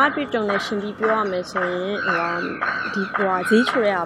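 Only speech: a young woman talking steadily in Burmese.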